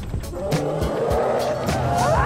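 Television title-sequence theme music with a steady, driving beat, with a rushing, whooshing sound effect layered over it.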